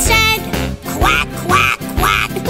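Children's cartoon background music with a cartoon duck voice quacking over it, several short quacks in the second half.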